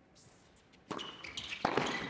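Tennis ball struck hard with a racket about a second in, then another sharp hit well under a second later, with brief high squeaks of tennis shoes on the court.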